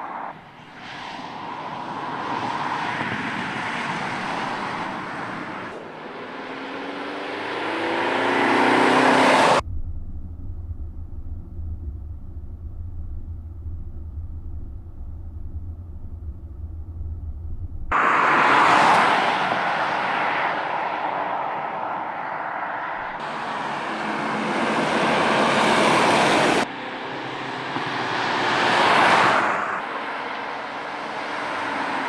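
Opel Insignia GSi Sports Tourer driving on a country road. Its engine and tyres grow louder as it accelerates past, the engine note rising, until the sound cuts off abruptly. Then comes a low steady drone heard inside the cabin, followed by further loud pass-bys.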